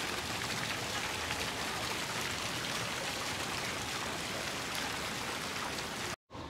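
Small fountain jets splashing steadily into a shallow decorative water channel.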